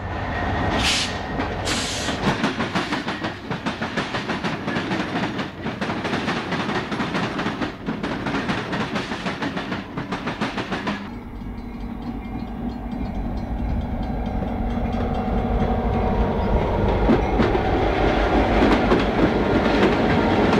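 Southern Pacific diesel freight locomotives passing close by, wheels clattering rapidly over the rail crossing. About halfway through the sound changes to a deeper, steady diesel engine drone from a passing locomotive, growing louder toward the end.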